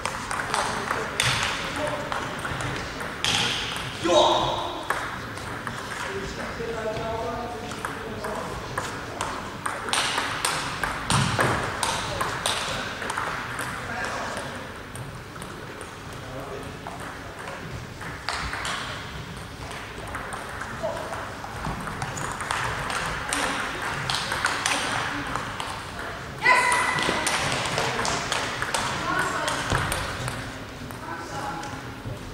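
Table tennis ball clicking off rubber bats and bouncing on the table in rallies, with voices around the hall. A loud voice-like call comes about four seconds in and another near the end.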